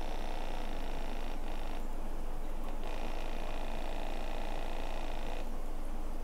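Battery-powered ATMAN ATOM-2 aquarium air pump running with a steady, loud buzz while its air stone bubbles in the water. It is loud even with a larger air stone fitted.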